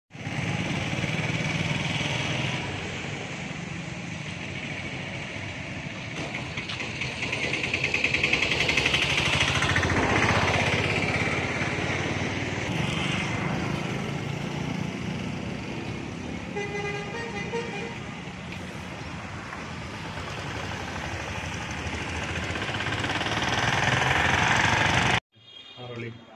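Street traffic: vehicles and motorbikes passing, one passing loudest about a third of the way in, and a horn sounding briefly past the middle. The sound cuts off abruptly near the end.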